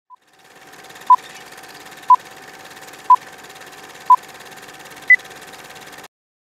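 Electronic countdown beeps over a steady radio-like hiss: four short identical beeps a second apart, then a fifth, higher-pitched beep, in the manner of a radio time signal.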